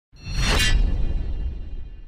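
Whoosh sound effect for an animated logo reveal: a noisy sweep that peaks about half a second in over a deep low rumble, then fades away.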